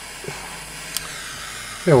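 Small butane torch flame hissing steadily while it heats a freshly wound micro coil until it glows, with a sharp click about a second in.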